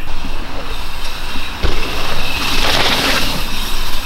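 Mountain bike ridden fast down a dirt trail: tyres rolling over the dirt and wind rushing over the microphone. A thump comes about a second and a half in, and the rush grows loudest near the three-second mark.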